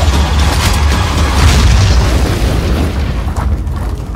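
Film-trailer sound effects: deep booms and explosion blasts over a heavy low rumble, mixed with music. The loudest point comes about a second and a half in.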